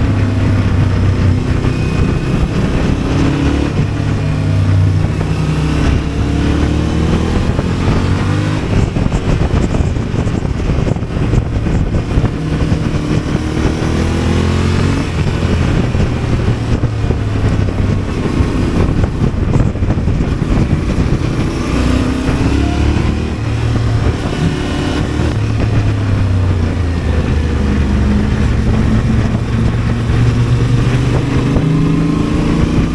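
Yamaha motorcycle engine heard from the rider's seat while riding a twisty road, its pitch rising and falling again and again as it accelerates out of and slows into bends, with steady wind noise over it.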